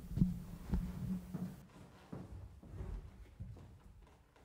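Soft low thumps and knocks of handling noise as piano duo players settle at a grand piano, with a faint clatter of sheet music, dying away to near quiet near the end.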